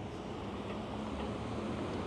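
City street traffic: a steady low engine hum from vehicles at an intersection over a constant background of street noise.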